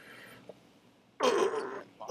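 A short, breathy sound from a man's voice, a little past halfway through, after a quiet stretch of room tone.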